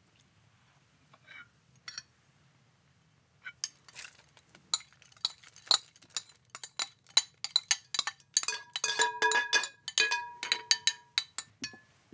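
Small china bowls and saucers clinking against a large cut-glass bowl as dry cereal is tipped into it: a quick run of clinks and rattling pieces starting a few seconds in, thickest near the end, where the glass rings out in several clear notes.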